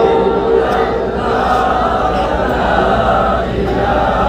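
A group of voices chanting a devotional refrain together in unison, heard over a sound system with a steady low hum underneath.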